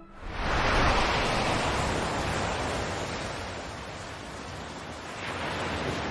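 Ocean waves crashing: a big rush of surf builds in just after the start and slowly dies away, then another wave swells near the end.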